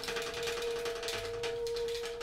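Alto saxophone holding one steady note while the drums are tapped lightly and quickly with sticks.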